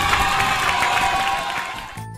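Crowd cheering and applauding, a welcome sound effect, fading out near the end.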